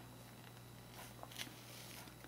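Faint rustling and soft scratching of yarn being worked with a crochet hook through the stitches, a little stronger about a second in, over a low steady hum.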